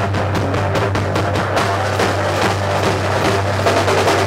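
A live rock band of drum kit and electric guitar through a Marshall amplifier, playing loud and steady with a dense run of drum and cymbal hits.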